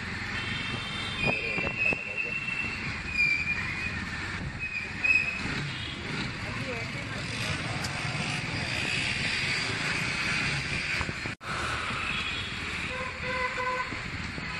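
Street traffic heard from a moving motorcycle: steady road and wind noise, with several short vehicle horn toots in the first few seconds and a longer horn near the end. The sound drops out for an instant about two-thirds of the way through.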